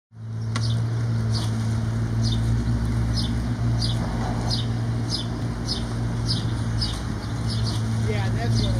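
A steady low hum with a short, high, falling chirp repeating about twice a second.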